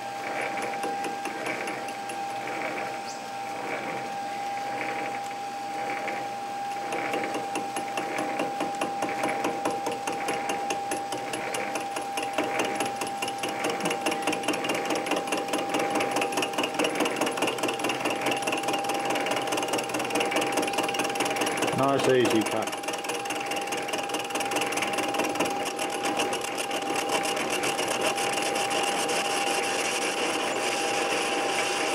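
Metal lathe turning a cast steam-engine column with a carbide tool: a steady whine from the lathe runs under the rhythmic scraping of the cut, which grows busier after several seconds. About two-thirds of the way through there is a short squeal that falls in pitch.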